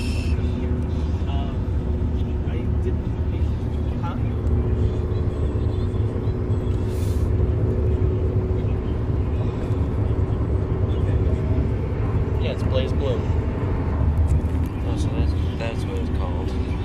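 Inside a moving car: steady low rumble of road and engine noise with a constant hum, and faint voices now and then.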